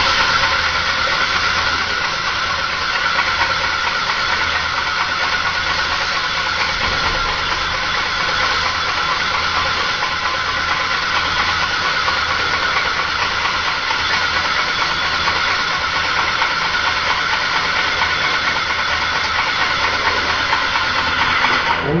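Graco airless paint sprayer gun spraying paint in a steady, continuous hiss of atomised paint from the tip; the spray cuts off right at the end as the trigger is let go.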